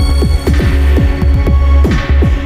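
Experimental electronic drone music: a heavy, steady low bass throb under repeated downward-sweeping synth tones, about four a second, with held tones above.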